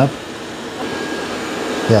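Robot vacuum-mop running, a steady fan noise with a faint high whine.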